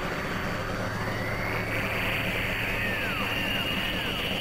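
Experimental synthesizer drone: a dense noisy wash over a steady low hum, with a tone gliding slowly upward in the first half and short falling chirps repeating about twice a second near the end.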